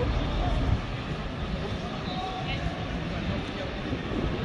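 City street ambience: a steady low rumble of road traffic with faint voices in the background.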